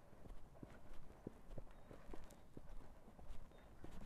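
Hooves of a Silesian Noriker draught mare walking on a muddy dirt track: faint, irregular clip-clop steps, a few a second.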